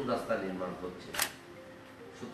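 A man's speech trails off, then a single short, sharp click or hiss comes about a second in, followed by a quiet pause.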